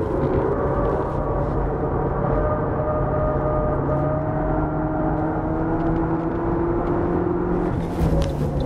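Toyota Vitz GRMN prototype's engine heard from inside the cabin, pulling hard on a circuit lap, with road and tyre noise underneath. The note holds steady, then slowly rises in pitch over the second half as the car accelerates.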